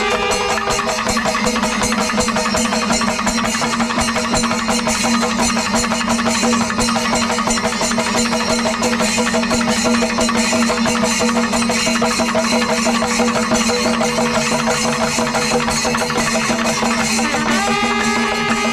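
Kerala temple percussion ensemble (chenda melam): dense, fast drumming and clashing ilathalam cymbals, with a steady low horn note from the curved kombu horns held beneath.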